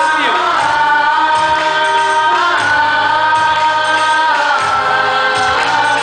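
A Pakistani patriotic song sung by many voices together over amplified music. The singing is loud and steady, with long held notes joined by short slides in pitch.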